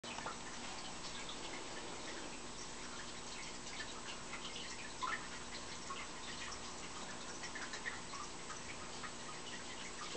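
Faint, irregular light clicks and small taps over a steady hiss and low hum as an old jointed teddy bear is handled and turned. One slightly louder tap comes about five seconds in.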